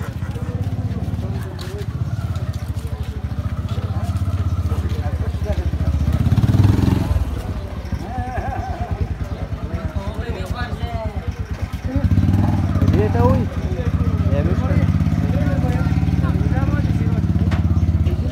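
A motorcycle engine running close by with a rapid low pulsing, swelling louder twice, once about six seconds in and again about twelve seconds in, while people talk over it.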